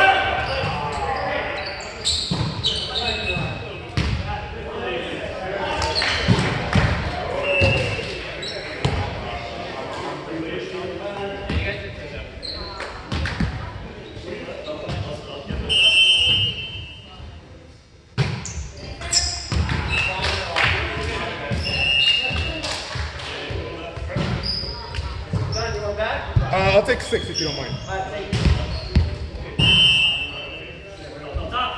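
Indoor basketball game echoing in a gym: the ball is dribbled and bounced on the court in repeated sharp thuds among unintelligible voices of players and onlookers. There are a few brief high-pitched sounds, one about halfway through.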